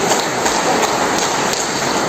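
Steady rain, heard as a loud, even hiss with no break.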